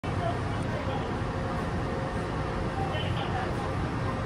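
Steady low rumble and hum of a Taipei Metro C301 train standing at a station with its doors open, with a faint steady tone and a faint murmur of voices in the background.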